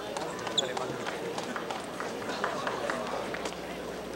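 Voices in a large indoor hall with quick footsteps on the court floor and one short, high shoe squeak about half a second in.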